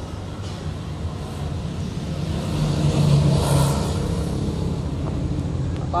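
Kubota two-wheel tractor's single-cylinder diesel engine running steadily, swelling louder for a second or so about two and a half seconds in before settling back.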